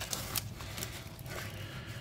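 Quiet rustling and a few light clicks of a stack of Pokémon trading cards being slid out of a torn foil booster wrapper and squared in the hands.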